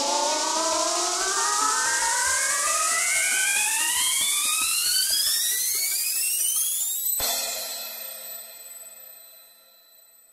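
The closing bars of a 185 bpm hitech psytrance track: a synth sweep climbing steadily in pitch under a hiss for about seven seconds, then cut off abruptly, leaving a high ringing tail that fades out.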